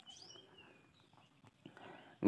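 Near silence: room tone, with a few faint high-pitched gliding chirps in the first second.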